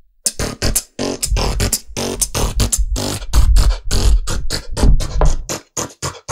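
Techno-style beatboxing into a microphone: a fast, dense run of sharp percussive mouth sounds over deep bass, starting after a brief pause and dropping out again just before the end.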